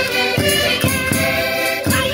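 Portuguese concertinas (button accordions) playing a Minho folk tune while women sing loudly along, with castanets clicking and a drum beating a steady pulse under them.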